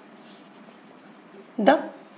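Marker pen writing on a whiteboard: faint scratchy strokes, then a man's voice says a word near the end.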